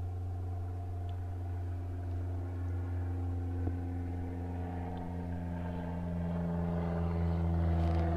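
Toyota Tacoma's engine idling, a steady low hum heard from inside the cab.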